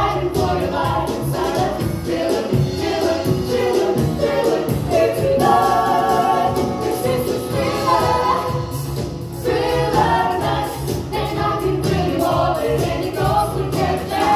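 Live band playing a song, with drums, bass guitar and keyboard, while a group of singers sing together.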